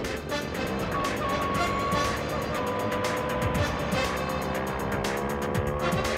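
Background music with a quick steady beat and held tones, over the engines of road traffic: trucks and a motorcycle running.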